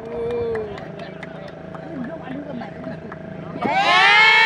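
Faint background voices over a faint steady hum, then a loud shouted voice breaks in near the end.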